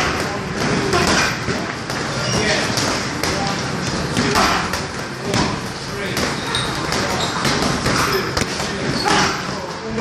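Boxing gloves landing on heavy punching bags: repeated, irregular thuds in a reverberant gym, over indistinct background voices.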